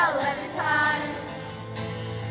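A woman singing live to her own acoustic guitar in a theatre, recorded from the audience: a sung phrase in the first half, then a held low guitar note.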